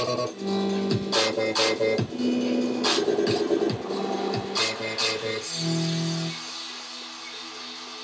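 Dubstep track playing back from an Ableton Live project: sustained synth bass notes with drum hits, the loud part stopping about six seconds in and leaving a quieter held tone.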